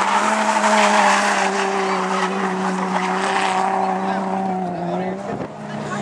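A drift car's engine held at steady high revs through a long sideways slide, with tyres screeching on tarmac. It grows quieter near the end as the car draws away.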